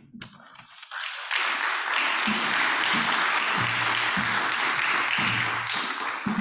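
Audience applauding in an auditorium. The clapping builds about a second in and then holds steady, tailing off near the end.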